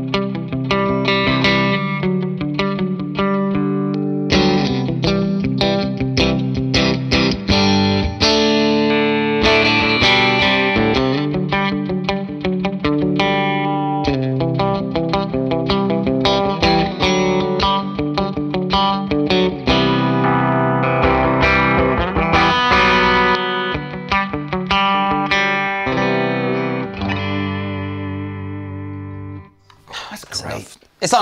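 FGN Odyssey electric guitar with an acacia koa top, played through an amp and pedals: a run of picked single notes and strummed chords. A last chord rings out and fades near the end.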